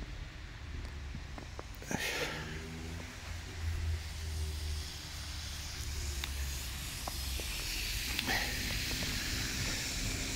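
A car driving past on a wet, snowy road: tyre hiss that builds and is loudest near the end, over a steady low traffic rumble.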